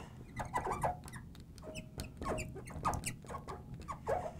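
Marker pen writing on a glass lightboard: a quick irregular string of short squeaks and little taps as the letters are drawn.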